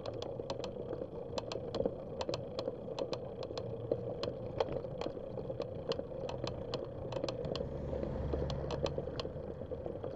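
A bicycle rolling on asphalt, heard from a bike-mounted camera: steady road and wind noise with sharp ticks and rattles several times a second. A low rumble swells briefly late on and fades.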